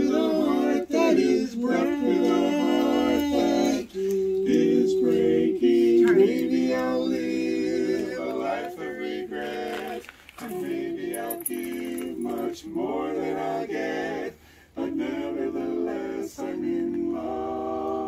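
Barbershop quartet of men singing a cappella in close harmony, holding long chords, with two short breaks between phrases about ten and fourteen seconds in.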